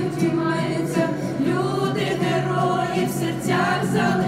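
A group of teenage students and a woman singing a song together into microphones. The singing is choral and continuous, with steady sustained low notes underneath.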